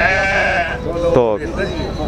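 A single long, wavering bleat from goats or sheep, lasting about three-quarters of a second.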